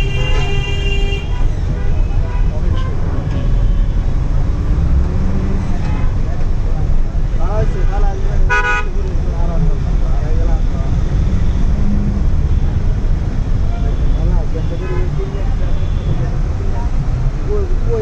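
Steady low road and engine rumble of traffic heard from a moving vehicle, with a vehicle horn sounding as it begins and a short honk about eight and a half seconds in.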